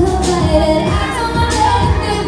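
A woman singing a pop song live into a microphone, over loud pop backing music with a steady beat.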